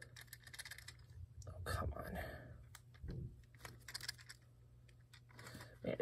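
Faint clicking and rustling of a stiff old plastic blister pack and its card backing being worked and pulled at to free a 1:64 diecast car that is stuck inside.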